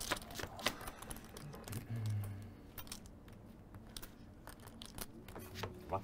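Poker chips clicking together as they are handled, in scattered, irregular light clicks.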